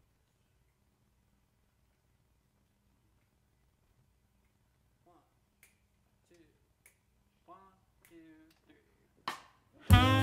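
Near silence, then a quiet count-off from about halfway: finger snaps about every 1.3 seconds, with a murmured voice between them. Just before the end the jazz quartet of saxophone, organ, guitar and drums comes in loudly on the downbeat.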